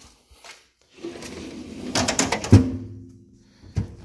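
A Mac Tools steel tool-chest drawer running shut on its roller-bearing slides: a rolling rumble for about a second and a half, ending in a solid thud about two and a half seconds in, followed by a brief low ringing from the cabinet.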